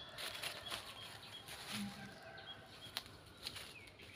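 Faint outdoor ambience in an orchard: short high bird chirps repeating every half second or so, over light rustling, with a couple of brief clicks near the end.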